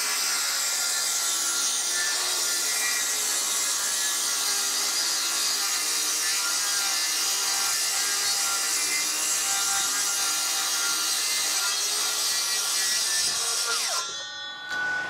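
Cordless circular saw ripping lengthwise through an eight-foot sheet of three-quarter-inch pressure-treated plywood: a steady, even cutting whine, winding down right at the end as the cut finishes.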